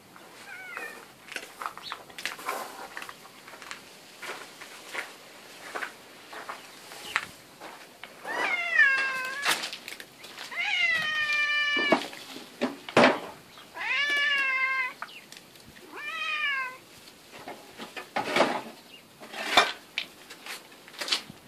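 Domestic tabby cat meowing: a faint meow near the start, then four loud, drawn-out meows in the second half, each falling in pitch, while it waits beside a dog eating from its bowl.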